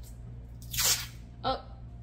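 Knife cutting through a stick of butter in its paper wrapper: one short crunchy scrape about a second in.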